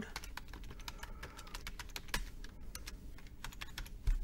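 Typing on a computer keyboard: an irregular run of light key clicks.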